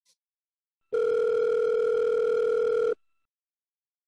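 Telephone ringback tone of an outgoing call: one steady tone about two seconds long, starting about a second in, then a gap. The call is ringing and not yet answered.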